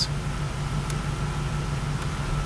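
Steady low hum in a C5 Corvette's cabin, ignition on and engine off, with one faint click about a second in from a dash information center button being pressed.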